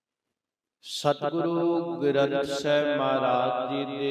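Dead silence for about a second, then a Sikh granthi's voice intoning scripture in a drawn-out, chanted recitation.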